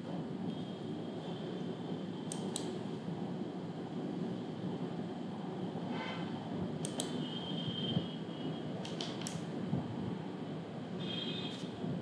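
Steady low background hum with a handful of faint sharp clicks from a computer mouse, some of them in quick pairs.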